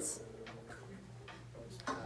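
Quiet room tone with a low steady hum and a few faint clicks, about three spread over two seconds.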